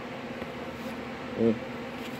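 A steady low buzzing hum of room machinery over faint hiss, with a short voiced murmur from a person about one and a half seconds in.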